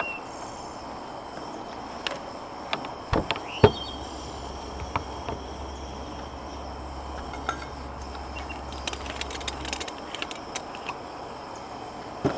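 Scattered clicks and knocks of a moka pot and camp stove being handled, two louder knocks a little after three seconds in, over a steady outdoor hiss with a faint high buzz. A low hum comes in about four seconds in and stops near ten seconds.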